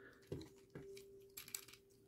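Faint scattered clicks and light knocks of the plastic Transformers Studio Series Bonecrusher figure's parts and joints as it is handled, over a faint steady hum.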